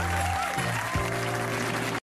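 Studio audience applauding over music with a bass line that steps between held notes.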